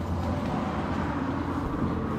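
Steady low background rumble with a constant hum and no distinct events.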